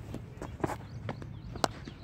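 A cricket bowler's running footsteps pounding the dry pitch close by, a few separate thuds, with the sharpest and loudest one near the end at the delivery stride.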